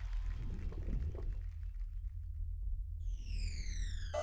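Added game-show sound effects: a steady low bass drone, joined about three seconds in by a repeating falling whistle-like sweep that cues a harnessed contestant being lowered toward the water pool.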